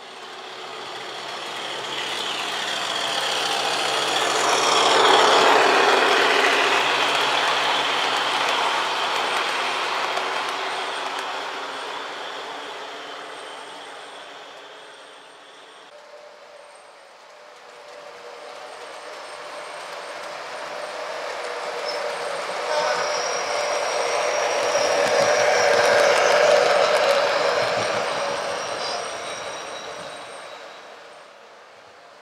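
Model train running past on the layout track, its rolling rumble swelling up and fading away. After a change about halfway through, a second pass builds again and is loudest near the end.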